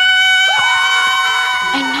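A girl's long, high-pitched scream held on one note, joined about half a second in by other voices screaming at a rising pitch.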